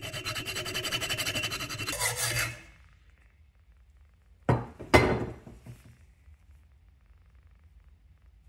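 Hacksaw cutting through cast aluminum, a fast run of rasping strokes for about two and a half seconds as the casting is sawn free of its excess metal. A little past the middle come two sharp knocks about half a second apart.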